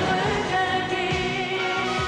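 Live German pop song: singing with held notes over a band backing with a steady beat.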